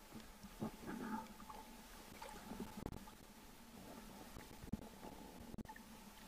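Faint, muffled water sloshing and gurgling at the surface, with a few soft clicks scattered through.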